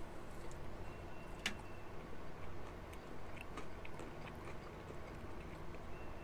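Quiet chewing of buffalo chicken wings, with faint scattered small clicks and one sharper click about a second and a half in.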